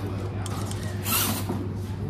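Axial Capra RC rock crawler working over large rocks, with a short scrape of tyres or chassis on stone about a second in, over a steady low hum.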